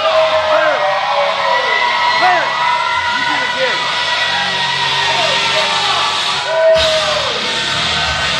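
Loud music playing while men yell, bellow and whoop encouragement over it.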